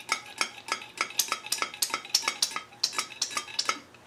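A quick run of light metallic clicks and clinks, about five a second, from handling the oil can and the rocker shaft assembly of a Land Rover 2.25 petrol engine while the shaft is filled with oil to check that it flows out of every rocker.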